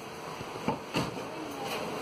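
Soft rustle and two light knocks from a hand-held camera being handled close to its microphone, with a faint voice in the background.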